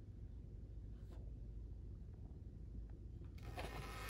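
Faint room tone with a low hum, then, about three and a half seconds in, a soft rubbing rustle as a thick board-book page is turned.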